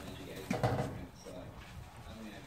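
A pig grunting once, a short low throaty sound about half a second in, as it heaves itself up from lying on its side.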